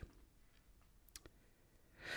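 Near silence: room tone, with two brief faint clicks a little past the middle.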